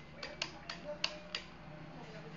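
Several sharp plastic clicks, about five in two seconds and irregularly spaced, from a Yamaha Vixion-type left handlebar switch with hazard and dim buttons being thumbed through its positions.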